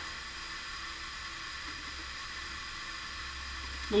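Steady background hiss from the recording's noise floor, with a faint low hum under it and no other sound until a voice starts at the very end.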